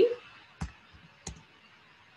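Two single key presses on a computer keyboard, about 0.7 s apart, typing into a browser address bar.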